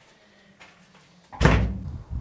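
Heavy metal wall-safe door slammed shut about one and a half seconds in: a single loud clunk with a short ringing decay.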